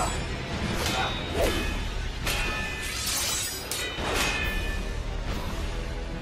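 Film fight soundtrack: score music under swords swishing and clashing, with several sharp strikes in the first two-thirds, some of them ringing after the hit.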